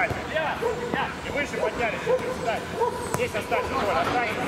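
Men's voices shouting and calling across an outdoor football pitch in short overlapping bursts, with a few sharp knocks of the ball being kicked.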